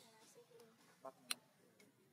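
Near silence broken by two short sharp clicks about a quarter second apart, a little past a second in, the second louder.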